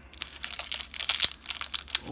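A Topps baseball card pack wrapper crinkling in the hands as it is pulled open, a quick run of irregular crackles.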